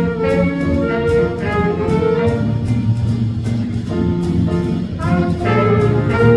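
Big band jazz ensemble playing: saxophones, trumpets and trombones in held chords over a drum kit keeping time with cymbal strokes. The horns thin out in the middle and the full band comes back in louder about five seconds in.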